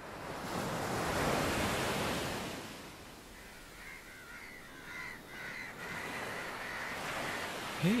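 Ocean surf: a wave breaks and washes in, swelling over the first few seconds and then easing into steady surf. Crows caw through the middle and later part.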